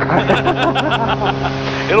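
People laughing inside an Adam A500's cabin over the steady drone of its two Continental TSIO-550-E piston engines, climbing after takeoff.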